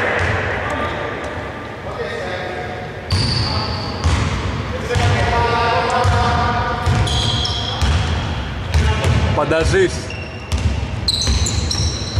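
Basketball being bounced on a gym's hardwood court, with players' voices calling out in the large hall and short high-pitched squeaks, typical of sneakers on the floor, coming thickest near the end.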